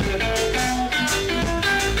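Live reggae band playing an instrumental passage: an electric guitar plays sustained lead notes, one of them bending, over drum kit and bass.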